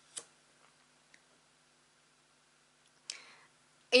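Light handling of a deck of tarot cards: a sharp click of card on card just after the start, a faint tick about a second in, and a short soft rustle of the cards near the end, over a faint steady hum.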